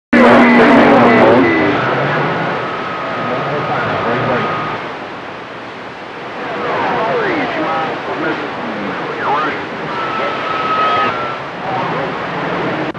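CB radio receiver on channel 28 picking up long-distance skip: a hiss of static with garbled, overlapping far-off transmissions, steady whistling tones, and whistles that glide down in pitch. Loudest for the first second or so.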